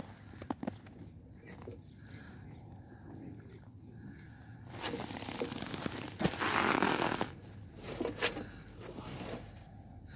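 Faint rustling and scraping from a wire-mesh cage trap holding a caught rat, with a louder rush of noise for a couple of seconds just past the middle and a few sharp clicks.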